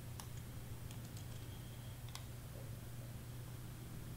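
A few faint, scattered clicks of computer mouse and keyboard use in the first half, over a steady low hum.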